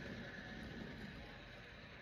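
Faint rolling of a die-cast toy railcar's wheels across a hardwood floor, fading as it moves away.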